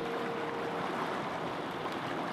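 Fast, steady rushing of river water over rapids.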